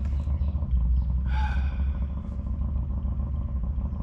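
Low, steady rumble of an engine running some distance away. A short higher-pitched sound comes about a second and a half in.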